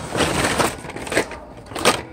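Hot Wheels blister-pack cards, cardboard backs and plastic bubbles, rustling and clacking against each other as a hand rummages through a pile of them, with a couple of sharper clacks in the second half.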